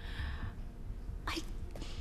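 A crying woman's shaky, tearful breath in, then a short choked 'I' a little over a second in.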